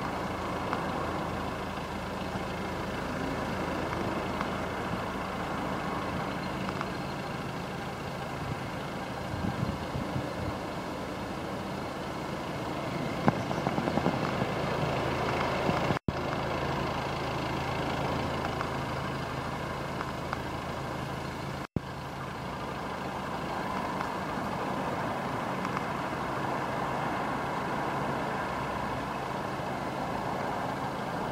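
Volkswagen Golf TDI turbo-diesel engine idling steadily, with a few knocks about halfway through. The sound cuts out briefly twice.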